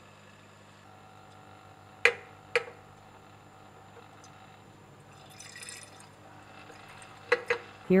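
An alcoholic solution being poured from a bottle into the ground-glass neck of a flask: two sharp clinks about two seconds in, a faint pour of liquid around the middle, and two more clinks near the end.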